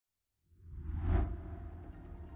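A whoosh transition effect swelling up out of silence about half a second in, peaking just after a second, then dying away into a low rumble.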